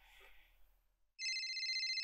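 A phone ringing: a high, rapidly trilling electronic ring that starts about a second in and keeps going.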